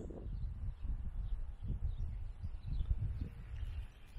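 Wind buffeting a phone microphone outdoors, an uneven low rumble, with faint bird chirps in the background.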